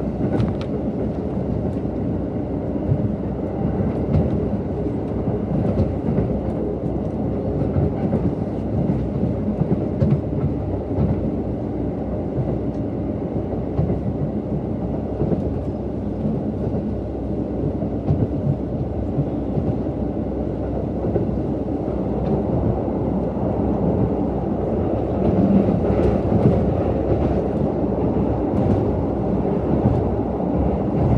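Running noise heard inside a KiHa 183 series diesel railcar: a steady rumble of the diesel engine and the wheels on the rails, with occasional faint clicks as the wheels cross rail joints.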